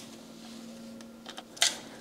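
Quiet workshop room tone with a faint steady hum. A few small clicks and one short scrape near the end come from hands working the shock's lockout cable and pinch bolt on the bike.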